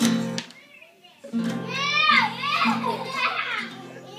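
A young child singing without clear words over steady held chords from an instrument, with a brief lull about a second in.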